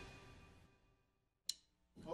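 Near silence as the last of the song's music dies away, broken by a single short click about one and a half seconds in.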